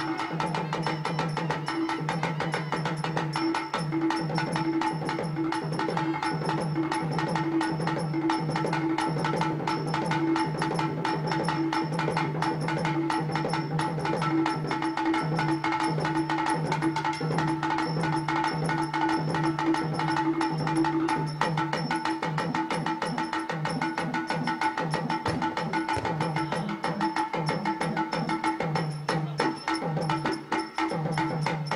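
Drama stage band playing: fast hand-drum strokes over long held notes from a melody instrument, with no singing.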